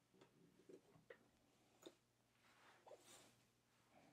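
Near silence: room tone with a few faint clicks and light handling noise as a swing-away heat press is opened.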